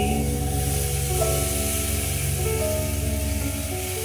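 A long rainstick tipped end over end, its filling pouring down in a steady hiss, over the held ringing tones of crystal singing bowls.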